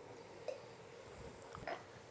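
Faint kitchen sounds of soy sauce being poured from a bottle into cream in a frying pan. There are two small soft sounds, one about half a second in and one near the end.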